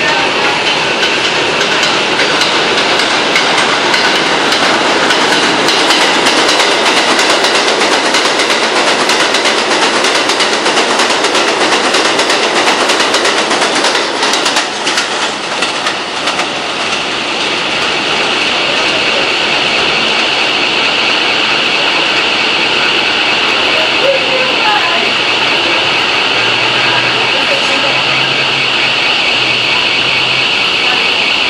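New York City R160A-1 subway trains running along an elevated steel structure, the wheels clicking over rail joints. The sound dips briefly about halfway through, then runs on steadier as another train approaches.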